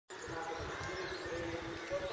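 Several people's voices talking at once in the background, overlapping and indistinct, over irregular low thumps.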